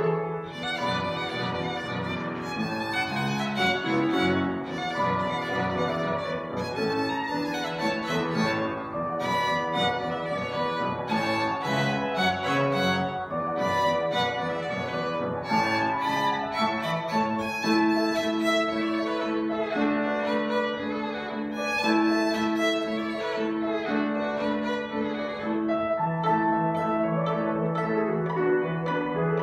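Solo violin playing a folk-dance piece with grand piano accompaniment, in a continuous stretch of music. Roughly the last third has longer held notes.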